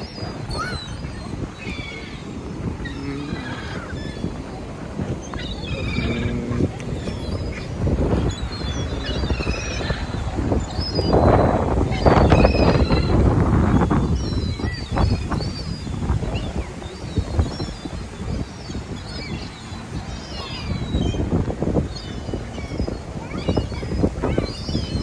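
Gulls and ducks calling: many short, high squawks scattered throughout, over a low rushing noise that swells in the middle.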